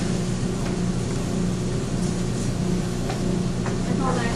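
Sugar, sulfuric acid and potassium chlorate reaction burning in a frying pan, hissing steadily like food frying, with a few faint crackles. Under it runs the steady drone of the lab fume hood's fan.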